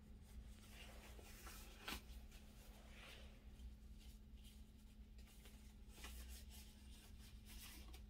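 Near silence over a low steady hum, with a few faint rustles of disposable gloves being pulled on.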